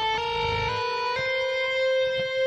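Electric guitar playing a short rising legato phrase of hammer-on notes: each new note is sounded by the fretting finger striking the string, with no pick attack, so the notes step upward about three times and run smoothly into one another.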